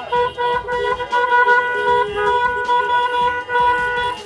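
Car horns held down in long, steady, overlapping honks, with a brief break here and there, over the background noise of a crowd and cars.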